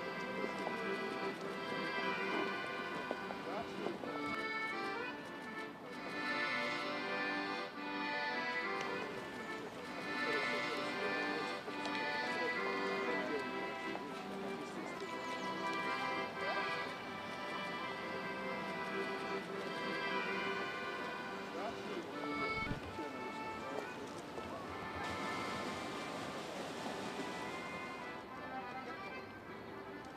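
Accordion music: a melody played over sustained chords.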